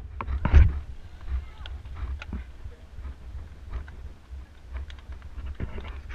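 Low rumble of wind and road vibration on an action camera riding with a group of road cyclists, with scattered light clicks from the bikes. A louder thump about half a second in, and faint voices of the riders near the end.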